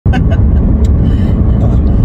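Steady low road rumble inside a moving car's cabin, with a woman's short laugh at the start.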